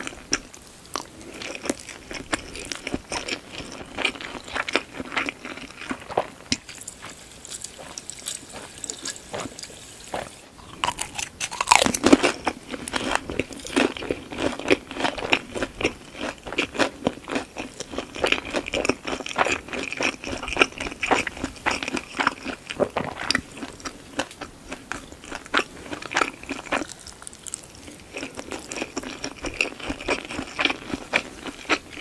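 Close-miked chewing of a mouthful of rice and shumai: dense, rapid crisp crunching and clicking, loudest about twelve seconds in.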